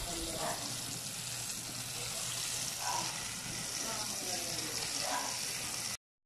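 Breaded chicken pieces deep-frying in a pot of hot oil, a steady sizzle.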